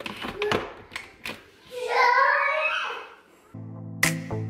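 Hard plastic clicks and knocks as the food processor's lid and feed-tube pusher are fitted on, then one short pulse of the motor whirring as the blade chops fresh cranberries, its whine wavering under the load.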